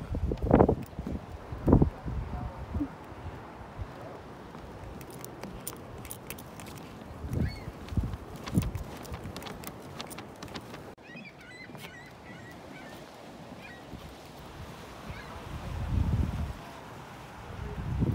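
Outdoor lakeshore ambience: wind gusts buffeting the microphone, a few goose-like honking bird calls, and light footsteps on boards.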